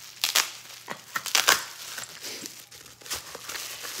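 Plastic packaging wrapper crinkling and rustling in the hands as it is pulled open, in irregular crackles that are loudest about one to one and a half seconds in.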